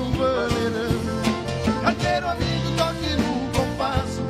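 Live band playing an instrumental break in a gaúcho dance song: piano accordion carrying the melody over electric bass and a steady beat.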